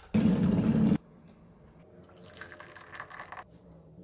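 Hot water from an electric kettle poured into a mug over a teabag, a faint trickle about two seconds in. Before it, in the first second, a loud burst of noise that cuts off abruptly.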